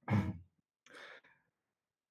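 A man's short hesitant "uh", then about a second in a brief, faint breathy exhale, heard over video-call audio.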